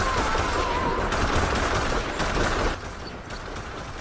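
Rapid rifle fire in a film soundtrack: a dense string of shots, loud for nearly three seconds and then thinner. A woman's high, wavering sung note fades out under the shots in the first second.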